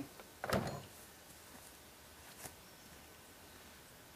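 A vintage McCulloch chainsaw, not running, set down on a plastic cooler lid: one thump about half a second in, then a small click a couple of seconds later, with quiet in between.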